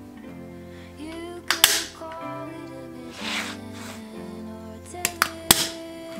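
Hand staple gun firing into the chair's upholstery: sharp snaps, a pair about one and a half seconds in and three more close together near the end, over background music.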